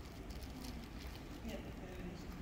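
Faint voices and small rustling noises in a large hall, over a low steady hum.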